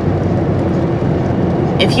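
Steady low rumble of road and engine noise inside a moving car's cabin, with a faint steady hum running through it; a voice comes in near the end.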